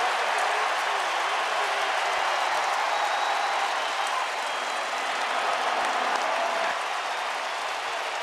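Stadium crowd cheering and applauding in a steady roar after a big defensive hit, slowly dying down over the last few seconds.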